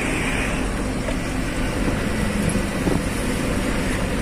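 Heavy truck driving on the highway, heard from inside the cab: the engine and road noise make a steady hum.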